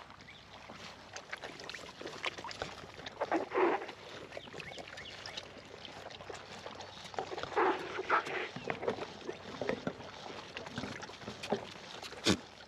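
Kiko goats drinking from a stock tank: irregular slurps, laps and splashes of water, loudest in bunches about three and a half seconds in and around eight seconds.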